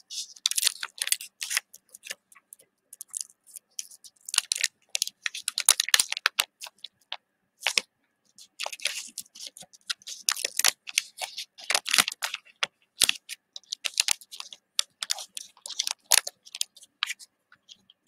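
Wax-paper wrapper of a 1990 Fleer basketball card pack crinkling and tearing as it is peeled open by hand, in a run of short, crisp crackles with brief pauses between them.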